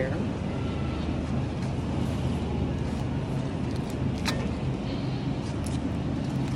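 Steady low hum of a supermarket's refrigerated produce section, with a single sharp tick about four seconds in and light crinkling of a thin plastic produce bag near the end as kale is bagged.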